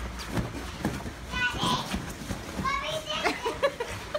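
A woman laughing in high-pitched bursts, most of it in the second half, over scattered knocks and rustles of a wet dog scrambling on couch cushions.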